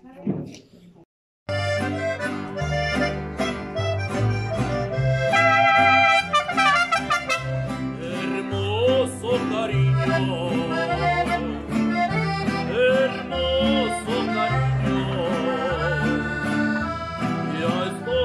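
A small band of trumpet, accordion and guitars playing a lively tune. It starts suddenly about a second and a half in, after a brief silence.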